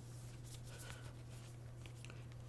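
Faint rustling and scraping of a CD album's snug protective sleeve being worked open by hand, over a steady low electrical hum.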